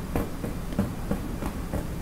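Quiet room tone: a steady low hum with a few faint, short clicks scattered through it.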